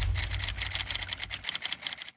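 Typewriter key-clack sound effect: a quick run of sharp clicks, about ten a second, as the text types itself on. A deep rumble dies away beneath the clicks over the first second and a half.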